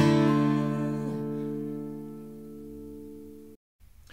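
Acoustic guitar: a last chord strummed and left to ring, fading slowly for about three and a half seconds before it cuts off suddenly.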